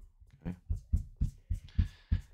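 Gum eraser scrubbed back and forth in quick short strokes along the edge of a comic book's paper cover on a table, a soft rubbing with about five dull thumps a second.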